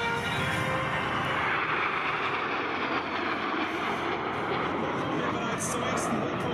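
Jet engines of a formation of military jets flying overhead: a steady rushing jet noise that builds in the first couple of seconds and then holds.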